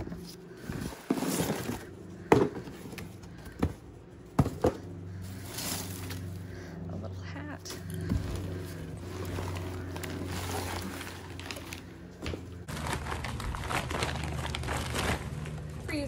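Black plastic trash bag rustling and crinkling as gloved hands dig through it, shifting clothes and toys inside, with several sharp knocks of objects knocking together in the first few seconds.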